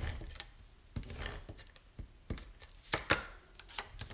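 Paper and cardstock being handled on a craft mat while adhesive is applied to the back of a patterned paper strip: a scatter of light taps and clicks with brief faint rustling.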